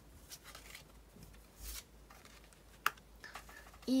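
Oracle cards being drawn from a deck and laid down on a cloth: soft rustles and slides, with one sharp card snap about three seconds in.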